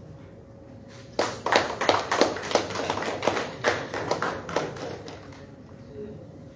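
A small group of people clapping, starting suddenly about a second in and dying away after about four seconds.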